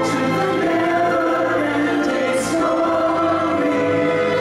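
A choir singing long held chords over musical backing, with the chord changing a little past halfway.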